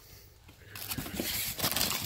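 Plastic zip-lock bags rustling and crinkling as a hand rummages through them in a cardboard box, with a few light clicks of small items knocking together, starting just under a second in.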